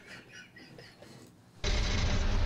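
Nearly quiet at first, then about one and a half seconds in the steady running noise of a car, as picked up by a dashcam inside it, starts abruptly.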